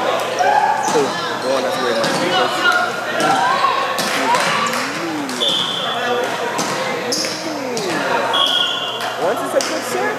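Busy gymnasium ambience with many voices chattering and echoing in the hall, balls bouncing and being struck on the hardwood, with a few sharp knocks, and a few short high squeaks.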